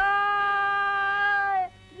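A man's voice singing one long, steady, high 'sa' of the sa-ri-ga-ma solfège scale as a singing exercise, held about a second and a half and dipping slightly in pitch as it ends.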